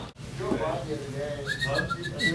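Faint voices, then a short, high, steady whistled tone starting near the end.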